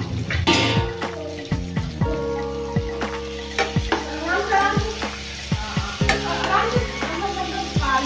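A metal slotted spoon stirring and scraping potato and tomato pieces in a nonstick frying pan, with the food sizzling as it fries. The stirring grows busier from about halfway through.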